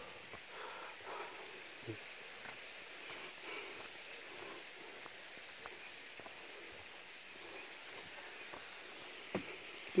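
Faint outdoor quiet: a steady soft hiss with scattered light rustles and steps on a dirt path strewn with dry leaves.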